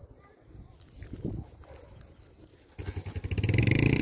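Quiet at first, then a motor vehicle's engine comes in suddenly and loud near the end, running with a rapid, even pulse.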